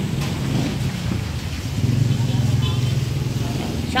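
A motor vehicle engine running close by on a wet street, growing louder about two seconds in and easing off near the end.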